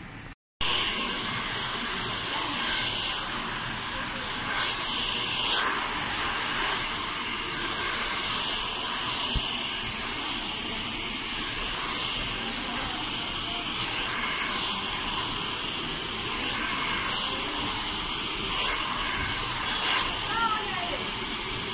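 Handheld hair dryer blowing steadily while hair is blow-dried, starting abruptly about half a second in.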